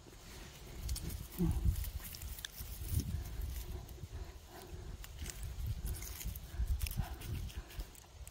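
Rustling and crackling of dry grass, moss and twigs as a hand reaches in and picks chanterelle mushrooms from the forest floor, with irregular low bumps of the phone being handled.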